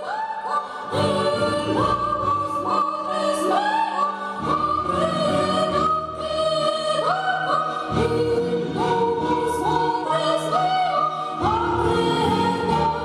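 Choral singing: several voices holding long notes together, moving to a new chord every second or few.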